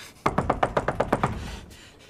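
Rapid knocking on a wooden front door: a quick run of about eight knocks a second starting a moment in, lasting about a second and then dying away.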